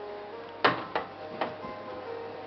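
Glow Worm toy playing its lullaby tune, a simple melody of electronic notes. Three sharp knocks come through about halfway in, the first the loudest.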